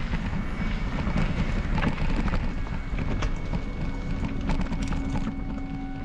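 Mountain bike rattling and knocking over a rough dirt singletrack, with wind rumbling on the camera microphone. Faint steady tones sit underneath, and the sound eases off near the end.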